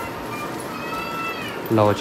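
A faint cat meow, one call of about a second that rises and falls in pitch, over steady background noise; a short spoken word follows near the end.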